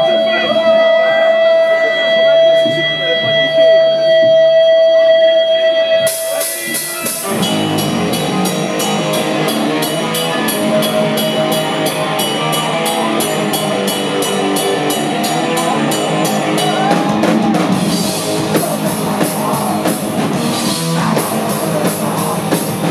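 Live metal band: a single guitar tone held and ringing for about six seconds, then the whole band comes in with distorted guitars and fast, driving drums.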